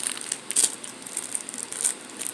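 Plastic snack wrapper crinkling in the hand, in irregular crackles that are strongest at the start and again about half a second in.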